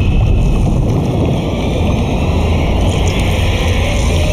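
Loud, steady low rumble with a noisy hiss above it, a sound-design drone of the kind used in film trailers.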